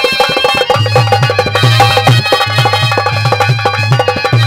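Instrumental interlude of live Haryanvi ragni folk music, with no singing: held, steady melody notes over fast, dense hand-drum rhythm and a pulsing low drum beat.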